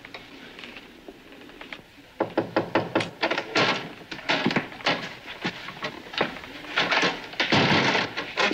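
A short quiet pause, then from about two seconds in a run of knocks and thuds, several a second.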